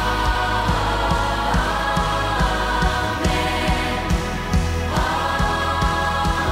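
Children's choir singing long held notes with a worship band, over a steady low beat.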